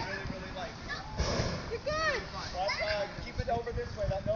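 Onlookers' excited voices: several short, high-pitched cries and exclamations that rise and fall, with a brief rush of noise about a second in.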